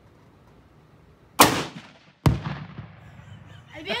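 A single rifle shot from a Savage Model 12, followed less than a second later by a second sharp boom of about the same loudness: the one-pound Tannerite target detonating on a hit about 220 yards away. Each bang trails off in a short echo.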